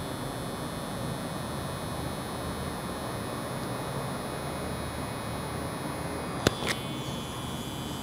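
Permanent-makeup machine pen running with a steady high buzz as its needle draws fine hairstroke lines. Two sharp clicks come close together about six and a half seconds in.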